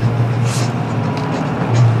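A vehicle engine running steadily at idle, a low, even hum under outdoor background noise.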